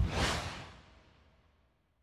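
A whoosh transition sound effect: one rush of noise that swells briefly, then fades away within about a second and a half.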